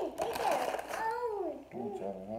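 Indistinct speech: a person's voice talking, with one drawn-out vocal sound falling in pitch about a second in.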